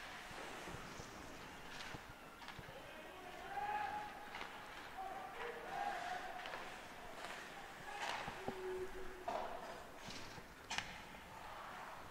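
Faint ice hockey play-sounds from the rink: players calling out to each other, with sharp clacks of sticks and puck on the ice and boards, the sharpest near the end.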